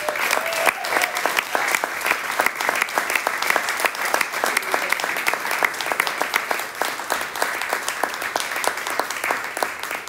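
Audience applauding: dense, steady hand-clapping.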